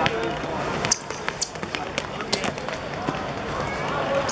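A football match on a hard outdoor court: a string of short, sharp knocks from the ball being kicked and players' shoes on the playing surface, scattered irregularly, over faint voices.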